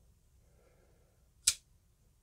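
QSP Penguin folding knife flicked open: one sharp click about one and a half seconds in as the sheepsfoot blade snaps out past its detent and locks open, with faint handling rustle before it.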